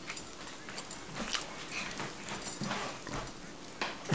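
Close-up eating sounds: a mouthful of food being chewed, with a few light clicks.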